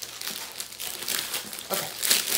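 Clear plastic wrapping crinkling as it is handled and pulled off a rolled diamond painting canvas, a quick irregular run of crackles.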